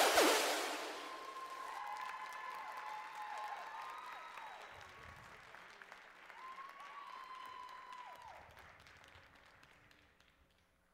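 Audience applause with cheering, including two long high cheering calls, fading away steadily as the clapping dies out after a dance performance ends.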